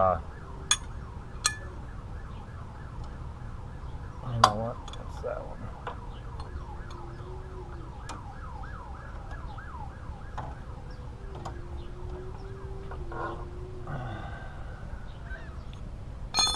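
A siren going in a fast rising-and-falling yelp, about three to four sweeps a second, stopping about fourteen seconds in. A few sharp metallic clicks of hand tools come through, the loudest about four seconds in.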